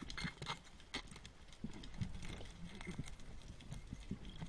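Underwater sound heard by a diver's camera: an irregular crackle of sharp clicks with soft low knocks in between.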